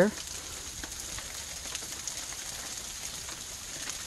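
Low, steady hiss of outdoor background noise with a few faint ticks.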